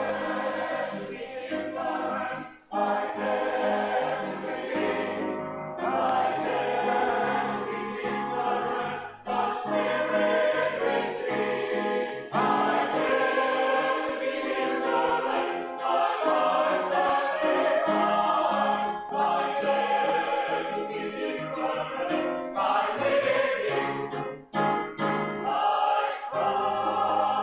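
A Salvation Army songster brigade, a small mixed choir of men's and women's voices, singing a sacred song together under a conductor, with brief breaks between phrases about three seconds in and near the end.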